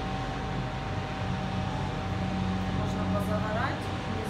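Outdoor high-rise city ambience: a steady mechanical hum over a constant background wash, with indistinct distant voices and a short rising tone shortly before the end.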